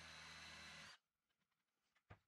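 Cordless drill running steadily for about a second as it drives a screw fastening the tabletop to the leg frame, then stopping abruptly.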